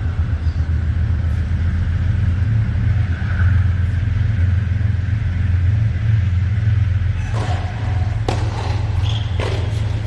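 Steady low rumble throughout, with about four sharp knocks of a tennis ball in the last three seconds, spaced roughly half a second to a second apart.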